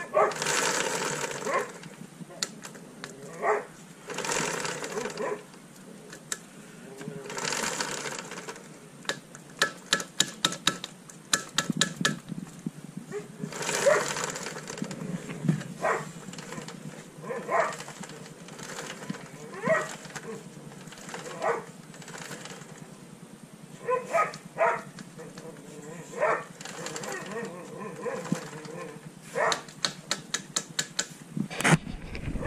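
Drive chain and rear wheel of a Honda sport motorcycle turned by hand on the stand: bursts of chain running over the sprockets, a run of rapid ticking, and many short sharp clicks and knocks. The chain is worn unevenly, with play in some links and not in others.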